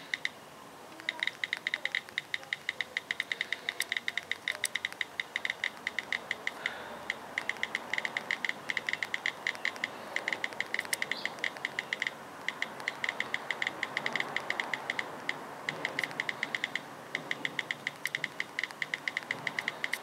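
iPhone's stock iOS 7 on-screen keyboard giving its key-click sound under fast two-thumb typing, several clicks a second in long runs with a few brief pauses.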